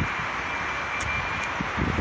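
Steady outdoor background noise, an even hiss with a low rumble, with a faint high steady tone through the first second and a half.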